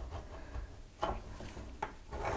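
Faint scraping of a blunt metal tool pressed hard and drawn along a steel ruler, scoring a fold line into thick paper, with two light clicks about a second in and near the end.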